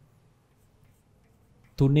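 Faint taps and scratches of chalk on a chalkboard as numbers are written, then a man starts speaking loudly near the end.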